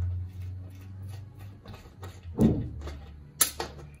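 Steel hand tools and bolts clinking and knocking as they are handled on a metal workbench: light taps throughout, a heavier knock about halfway through and a sharp clink near the end, over a steady low hum.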